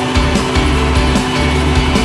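Loud background rock music with a steady beat.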